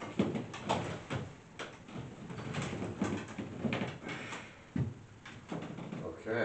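Irregular knocks, creaks and rustling as a person shifts about and lies back on a wooden bench, handling his leg braces.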